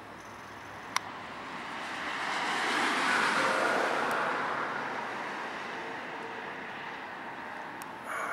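A car passing on the street: its tyre and engine noise swells over a couple of seconds and slowly fades away. A brief sharp click about a second in.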